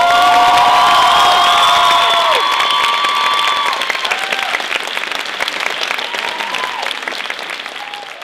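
Theatre audience applauding and cheering, with several long held shouts over the first two seconds or so; the applause then slowly dies down.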